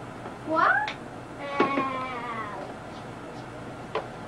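A domestic cat meowing twice: a short rising meow, then a longer one that trails down at the end.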